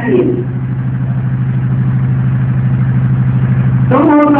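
A steady low mechanical hum, like a motor or engine running, with a fast even pulse.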